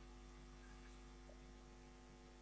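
Near silence: a faint, steady electrical mains hum with light hiss.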